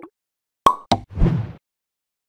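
Animated-transition sound effects: two sharp pops about a quarter of a second apart, then a short, deeper whooshing thud lasting about half a second.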